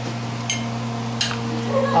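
Metal fork and knife clinking twice against a ceramic plate while cutting a piece of food, over a steady low hum.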